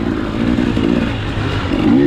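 Off-road dirt bike engine running under throttle on a rough woodland trail, with the chassis clattering over the bumps. The engine pitch rises near the end as the bike climbs a rutted rise.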